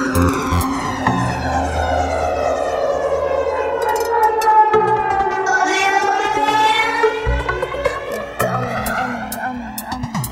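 Electronic dance music in a progressive house DJ mix, in a breakdown: a sweeping synth effect falls in pitch and then rises again, over held bass notes. The bass drops out a little before halfway and comes back about two-thirds of the way through.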